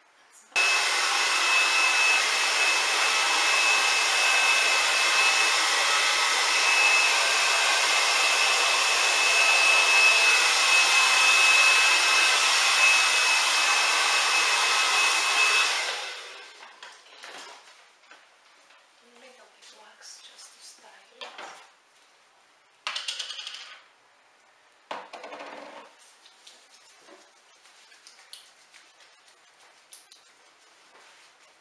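Hand-held hair dryer blowing steadily with a thin whine, switched off about sixteen seconds in; afterwards a few short, soft rustles and knocks.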